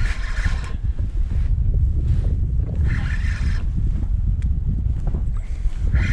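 Wind buffeting the microphone in a steady low rumble on open water, with brief hissing splashes at the start and again about three seconds in.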